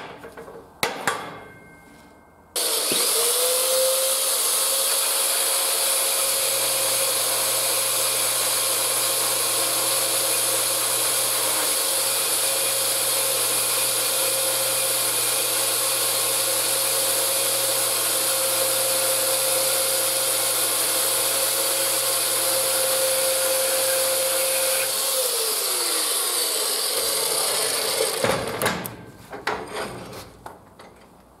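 Parkside PMB 1100 A1 portable metal-cutting bandsaw with an 1100-watt motor, switched on about two and a half seconds in. It runs steadily with a high hiss, cutting through a square steel tube, then winds down with a falling whine a few seconds before the end. A few knocks of metal on the steel bench follow as the saw is set down.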